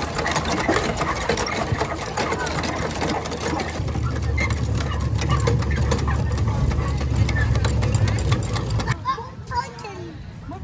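Cast-iron hand pumps on a rubber-duck race water game being worked, with quick clanking and clicking from the handles and water running into the troughs, among voices. A low engine-like rumble joins about four seconds in. Everything drops away abruptly near the end.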